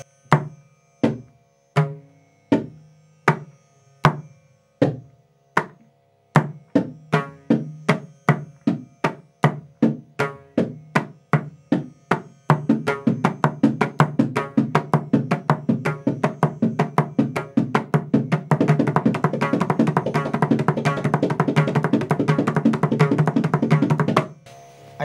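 Mridangam played solo, running through the basic eight-stroke lesson (ta ta cha ta ki ta ta ka) with ringing, pitched strokes. It starts at a slow, spaced pace and speeds up in steps, about halfway through becoming a rapid, almost continuous stream of strokes.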